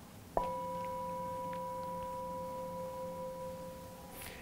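Brass singing bowl struck once with a mallet about half a second in, then ringing with a steady, slowly fading tone of a low and a higher note; it is sounded to open a one-minute guided meditation.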